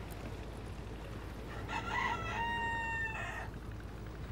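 A rooster crowing once, about halfway through: a few short rising notes, then one long held note that breaks off.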